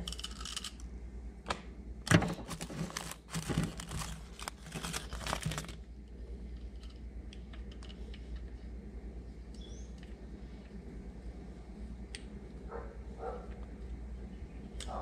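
Handling noise of rubber O-rings being worked off an oil filter with a pick: a dense run of small clicks, scrapes and crinkles for the first six seconds. After that only a few faint ticks remain over a low steady hum.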